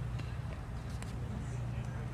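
Steady low background rumble with no distinct event, the ambient noise of an outdoor court.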